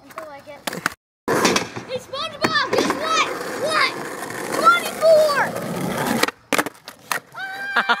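Skateboard wheels rolling over rough asphalt for several seconds, with a few sharp knocks near the start and again near the end.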